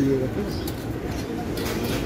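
A steady low background hum from the street, with a couple of light metal clinks from a small steel spoon against steel pots near the end.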